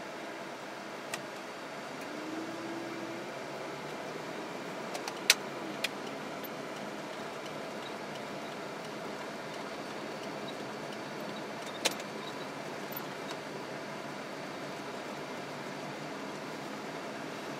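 Steady engine and tyre noise heard inside a moving car's cabin. A few sharp clicks stand out, the loudest about five seconds in and another near twelve seconds.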